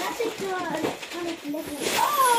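Children's voices chattering over one another, with wrapping paper rustling and tearing, a burst of it near the end.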